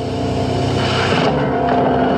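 Film soundtrack: sustained orchestral chords over a low rumble, slowly getting louder.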